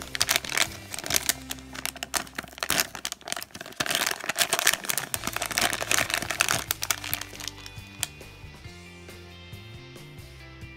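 Crinkling of a plastic blind-bag packet as it is handled and opened by hand; the crinkling stops about three quarters of the way through.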